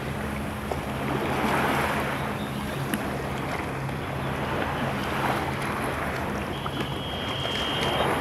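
Seaside ambience: a steady rush of surf and wind buffeting the microphone, over a low steady hum. A thin high tone comes in near the end.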